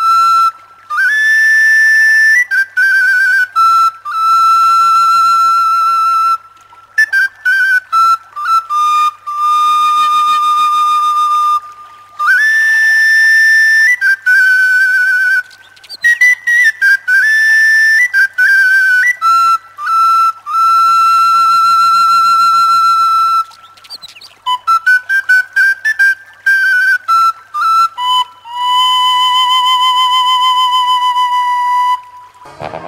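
A high, flute-like wind instrument playing a solo melody: long held notes with vibrato alternating with quick runs of short notes, in phrases separated by brief pauses.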